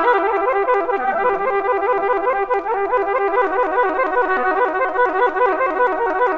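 Solo oboe playing a fast, continuous run of notes, a technical passage played with relaxed, flatter fingers, which are said to run much faster this way.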